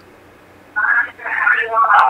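A short pause, then a man's voice, thin and narrow as over a telephone line, starts to answer about three-quarters of a second in.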